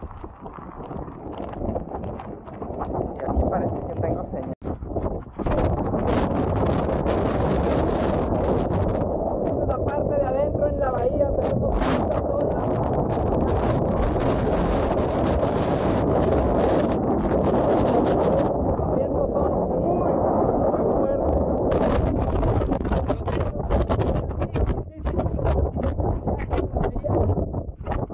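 Strong hurricane wind buffeting the phone's microphone: a loud, continuous rushing noise that grows heavier about five seconds in and surges with gusts.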